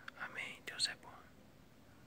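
A voice speaking softly, near a whisper, for about the first second, then only faint background hiss.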